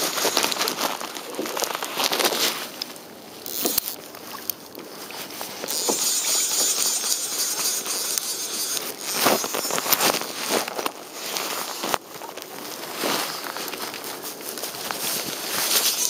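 Fly reel and line noise while fighting a fish on a fly rod: irregular crackling clicks and rushing hiss, rising to a stronger hiss about six seconds in, with wind on the microphone.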